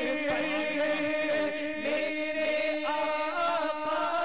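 A male voice singing a naat, Urdu devotional verse in praise of the Prophet, its melody gliding up and down over a steady held drone.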